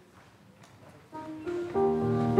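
Instrumental music starts about a second in after a quiet moment: held, steady notes on a keyboard instrument that build into fuller chords and grow louder.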